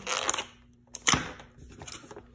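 Foil Pokémon booster packs crinkling and rustling as they are handled in a plastic tray, with one sharp click about a second in.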